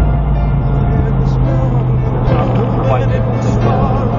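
A song playing as background music, with a steady low drone, and a wavering sung or lead melody coming in about halfway through.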